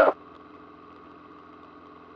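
Light aircraft engine running steadily in cruise, heard as a faint, even drone in the cockpit.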